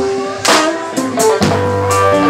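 Live rock band playing an instrumental passage: a Stratocaster-style electric guitar holding and changing single notes over a drum kit, with sharp drum hits every half second or so.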